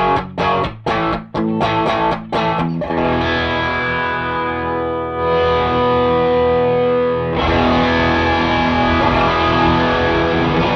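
Electric guitar (a Gibson SG with humbuckers) played through a Wampler Cranked OD overdrive pedal into a miked Matchless Chieftain valve amp, on a lower gain setting. It opens with about three seconds of short, choppy overdriven chords, then sustained chords ring out. A little past seven seconds in the tone turns fuller and brighter as the pedal's gain is turned up.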